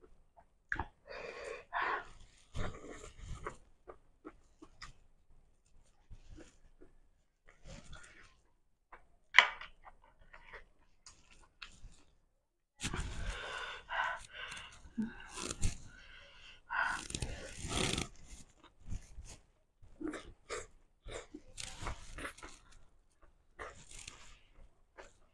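Close-miked mukbang eating sounds: chewing and lip smacks, with short clicks and rustles of fingers handling food on a plate, louder and denser in the middle.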